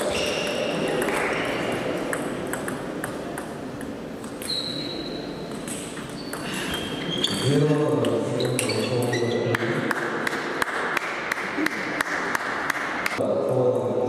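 Table tennis ball clicking off bats and the table in a rally, echoing in a large hall; near the end the clicks come quickly and evenly, a few a second.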